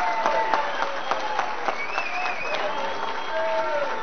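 Audience applauding, a dense run of hand claps, with a few voices in the crowd over it.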